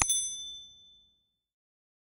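A single bright bell ding from a notification-bell sound effect. It starts with a sharp click and rings out high and clear, fading away within about a second.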